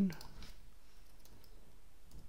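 A few faint computer mouse clicks over low room hiss.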